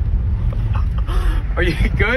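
Low, steady rumble of a car driving over a gravel dirt track, with wind on the microphone. A person's voice exclaims in the second half, loudest near the end.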